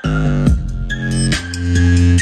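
Bass-heavy electronic music with sustained deep bass notes and drum hits, played through a pair of Elac bookshelf speakers and a Savard Hi-Q 6.5-inch subwoofer driven by a Fosi Audio MC351 mini amplifier. The bass swells loudest near the end.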